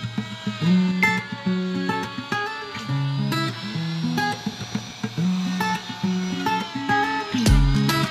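Background music: a plucked guitar melody over a bass line.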